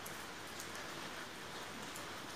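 Steady rain falling on surfaces: an even, fairly quiet hiss with faint scattered drop ticks.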